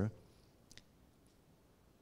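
A pause in speech, nearly silent, with one faint short click about three-quarters of a second in and a fainter tick a little later.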